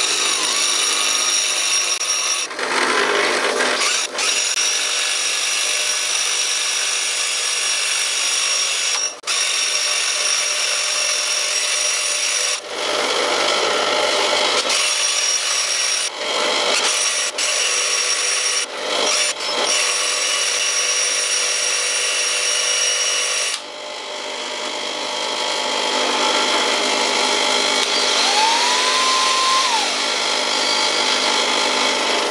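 Bench grinder running while the end of a steel threaded rod, spun in a cordless drill, is ground against the wheel to a point: a steady grinding noise with the drill's whine, broken by a few brief drops. About three quarters of the way through the grinding eases off.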